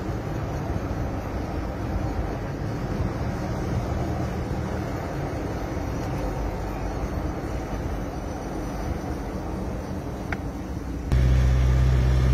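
Steady road and engine noise inside a moving car's cabin. Near the end it abruptly becomes louder, with a deeper engine hum.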